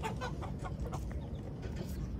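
Chickens clucking, a run of short clucks mostly in the first second.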